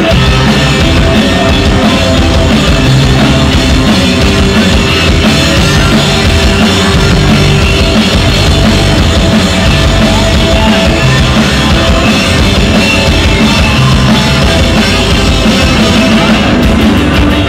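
Rock band playing live: electric guitar, bass and drum kit in a loud, steady full-band passage, with the sound of a small club.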